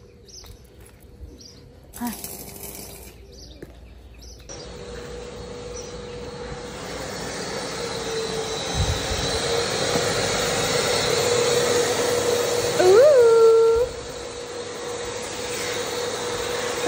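Wet/dry shop vacuum cleaner running: a steady motor hum with hiss that starts about four seconds in and grows louder. About three seconds before the end comes a short, louder note that rises in pitch and then holds.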